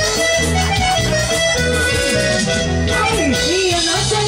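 Live band playing amplified dance music: held melody notes over a steady, repeating bass beat.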